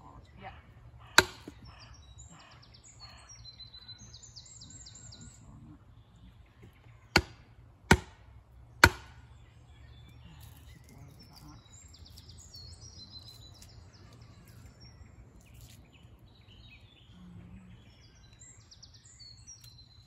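A heavy wooden log used as a beater striking the back of a billhook to cleave a piece of wood on a chopping block. One sharp knock comes about a second in, then three more in quick succession around seven to nine seconds in. Birds chirp between the strikes.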